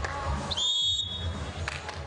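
Referee's whistle: a single steady, high blast of about a second, starting about half a second in, the signal for the server to serve.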